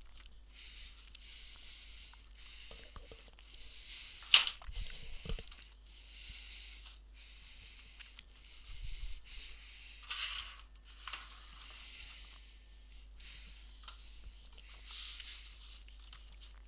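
Hands handling a plastic laptop case and a plastic storage tub on a workbench: soft rustling and scraping about once a second, with one sharp knock about four seconds in and a few dull thumps just after as the laptop is set down on the board.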